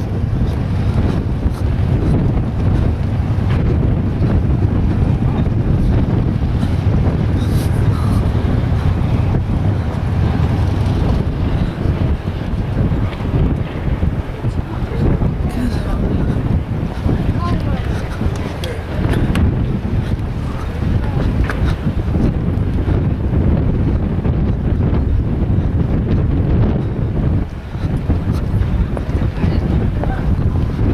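Wind buffeting the camera microphone: a loud, steady low rumble that swells and falls throughout.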